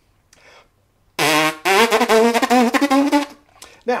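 A trumpeter's lips buzzing a brass-like tone: a short lower note about a second in, then a longer, higher note that wavers, tongued as a demonstration of articulation with the tongue through the teeth.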